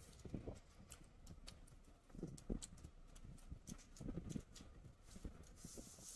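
Close-up chewing of a mouthful of rice with the mouth working, faint wet lip smacks and clicks coming at an uneven pace.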